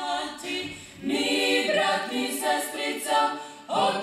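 A small group of women singing a cappella on several voices at once. The singing breaks briefly between phrases about a second in and again near the end.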